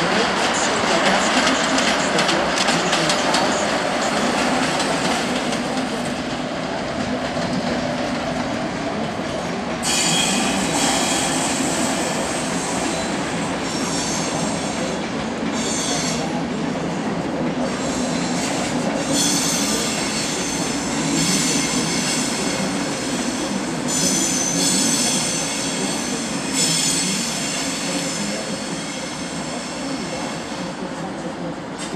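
Locomotive-hauled passenger train rolling slowly through station pointwork, its wheels clattering over the rail joints. From about ten seconds in, the wheel flanges squeal on and off on the curves.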